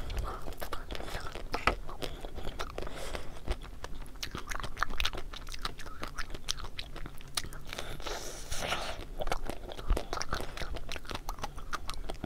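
Close-miked biting and chewing of a chocolate-coated ice cream bar: the hard chocolate shell cracks and crunches in many small, irregular crackles, with busier bursts of bites several times.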